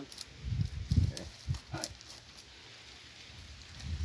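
A few clicks and knocks of stiff wooden basket stakes being bent and worked into the rim of a woven basket, mostly in the first two seconds, over a low rumble.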